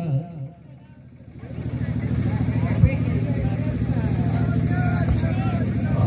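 A small engine runs steadily with a fast, even putter. It fades up about a second and a half in and then holds level, under faint distant voices.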